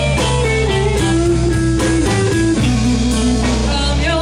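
Live band playing a blues-rock instrumental passage, with electric guitar to the fore over bass and drums; the melody slides between notes.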